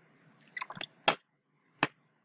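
A person drinking from a plastic water bottle: a quick run of short gulping sounds about half a second in, then a single sharp click near the end.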